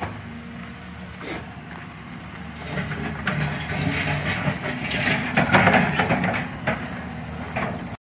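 Doosan tracked excavator's diesel engine running steadily while the machine works, growing louder with rough working noise from about three seconds in.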